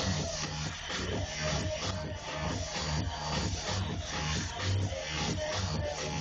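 Electronic dance music from a DJ set, with a steady pounding bass beat at about two beats a second.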